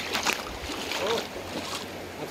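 Shallow river water rippling and washing over a gravel bed, a steady rush with a few sharp clicks in the first half second.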